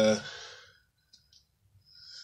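A man's voice trailing off on a hesitant "uh" in the first moment. Then near silence with a couple of faint, brief clicks about halfway through, and a soft breath-like sound just before he speaks again.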